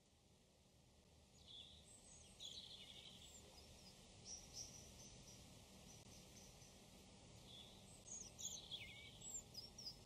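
Very faint ambient soundscape of scattered short, high bird chirps over a low steady hum.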